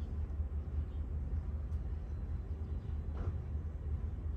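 Steady low rumble in a truck cab, with no speech.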